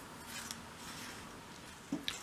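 Faint handling noise as a steel ruler and pencil are lifted and set down on a cutting mat, with a light tick about a quarter of the way in and another just before the end.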